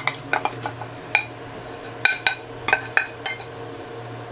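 A stainless steel pot knocking and scraping against a ceramic bowl as cooked food is tipped out of it: about a dozen sharp, irregular clinks, each with a short ringing tone, over a steady low hum.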